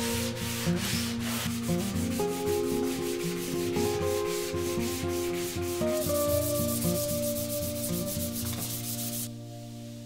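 Sandpaper rubbed by hand over a plywood board in quick back-and-forth strokes. The strokes speed up about six seconds in and stop shortly before the end.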